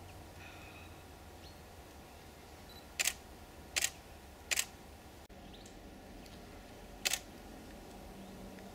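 Digital SLR camera shutter firing four single frames at uneven intervals, three close together about a second in and after, then one more near the end. Each is a quick double clack of the mirror and shutter.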